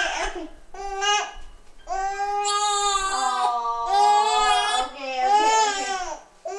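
Infant crying in high, drawn-out wails: a short cry about a second in, a long one lasting nearly three seconds, then another near the end. A tired, cranky baby fussing on the way to sleep.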